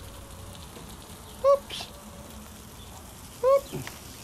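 Two short, high-pitched vocal calls about two seconds apart, each a brief rise and fall in pitch, over a low steady background.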